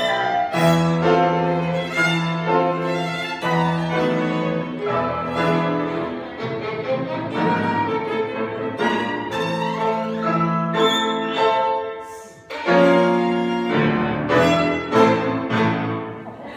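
Violin and piano playing classical music together, with a short break about twelve seconds in before the playing resumes.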